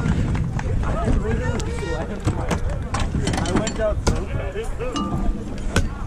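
Several people talking at once in the background, none close enough to make out, with scattered sharp knocks and clicks through it.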